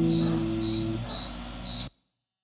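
The final acoustic guitar chord ringing out and fading, with some of its notes dying away about halfway through. A faint high-pitched chirp repeats about twice a second, then the recording cuts off abruptly to silence just before the end.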